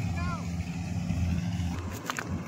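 Steady low drone of a combine harvester's engine running as it cuts wheat; it drops away shortly before the end.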